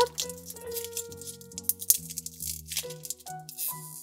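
Clear plastic wrapper crinkling as a lollipop is unwrapped by hand, over soft background music with held notes.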